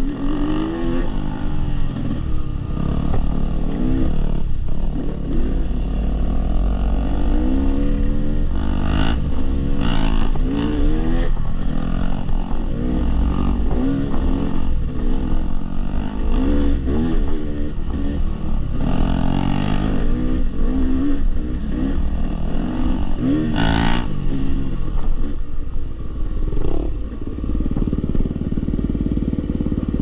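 Yamaha YZ250X two-stroke dirt bike engine being ridden on a dirt trail, its pitch rising and falling over and over with the throttle. Near the end it eases off and settles steadier as the bike comes to a stop.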